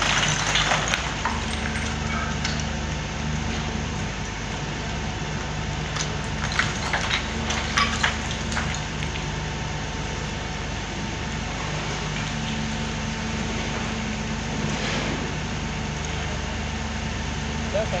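Diesel engine of a Doosan wheeled excavator running steadily at idle, a low even drone. A few sharp clicks come about six to eight seconds in.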